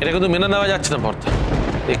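A voice speaking with rising and falling pitch over a low, rumbling dramatic background score.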